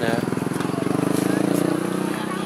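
A small engine idling steadily close by, with an even, pulsing low note that swells slightly in the middle and eases off near the end.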